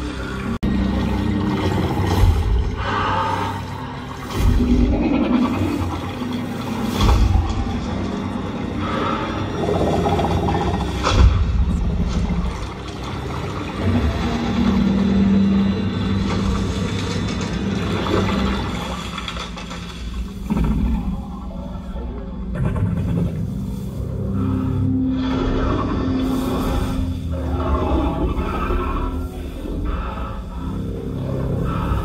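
A film soundtrack playing through cinema speakers: music and sound effects, heavy in the bass, with several sharp hits in the first dozen seconds and sustained low tones later.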